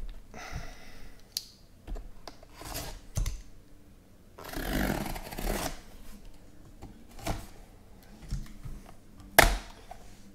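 A sealed cardboard shipping case of Panini card boxes being opened by hand: rustling and scraping of cardboard and packing tape, a longer tearing rasp about halfway through, and a sharp snap near the end, the loudest sound.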